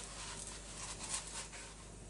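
Faint rubbing of a wad of kitchen paper wiping leftover fat out of the bottom of a roasting pot, in a few soft strokes that die away toward the end.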